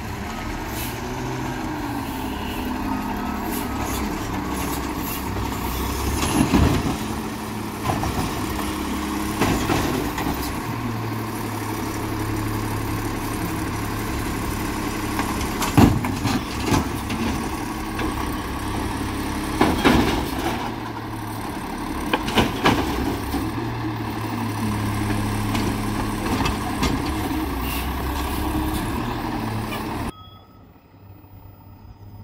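Automated side-loader garbage truck's engine running, revving up for two longer stretches while its hydraulic arm lifts and empties a recycling cart, with about five loud bangs as the cart is shaken and set down.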